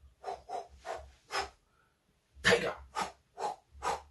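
A person making a run of about eight short, breathy vocal noises, like sniffs or stifled snickers. Four come close together, then the loudest follows after a short gap, then three more.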